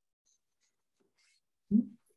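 Near silence, then a man's short, low vocal sound near the end as he begins to speak again.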